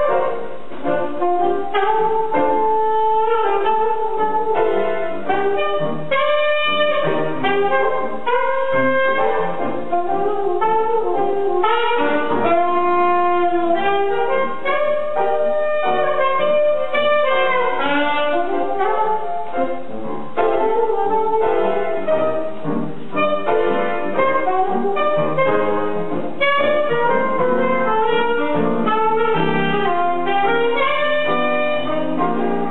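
Alto saxophone and grand piano playing jazz as a duo, the saxophone running a busy line of quick notes over the piano.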